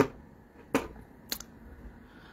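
Three short, sharp clicks about two-thirds of a second apart, the first the loudest, with low room noise between them.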